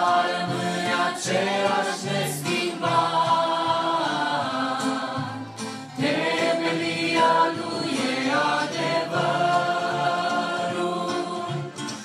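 A worship group of men and women singing a Romanian hymn together in harmony through microphones, with long held notes and short breaths between phrases.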